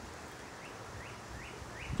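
A bird calling with short rising chirps, repeated about two or three times a second and coming quicker toward the end, over faint outdoor background noise.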